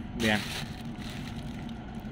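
Faint rustle of fingers working through crumbly worm castings in a plastic sack, over steady background noise.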